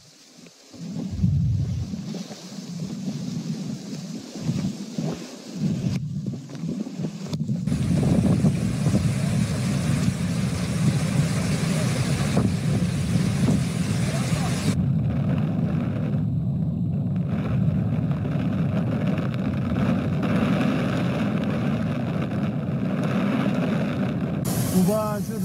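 Storm sound from phone footage of a flash flood: uneven gusts of wind buffeting the microphone at first, then from about eight seconds in a steady, loud roar of rushing floodwater and heavy rain.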